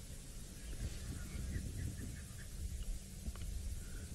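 Quiet bush ambience: a steady low rumble, with a brief run of faint, short distant animal calls in the middle.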